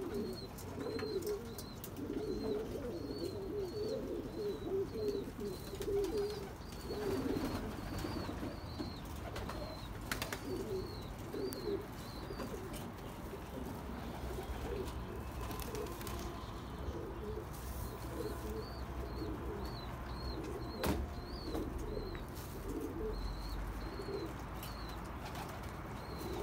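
Domestic pigeons cooing in a continuous low murmur, with a small bird repeating short high chirps over it. Two sharp knocks, about ten seconds in and again about twenty-one seconds in.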